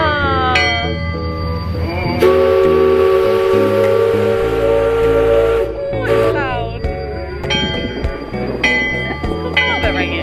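A riverboat's steam whistle blows one long blast of about three and a half seconds, starting about two seconds in and cutting off suddenly. Music plays underneath.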